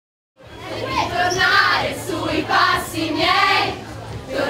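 A group of voices singing together in short phrases over a steady low hum, starting about half a second in.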